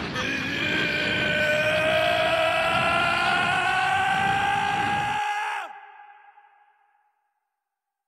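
An enraged animated creature's long, slowly rising howl over a dense rumbling sound effect. It breaks off about five seconds in, a single tone trails away, and then there is dead silence.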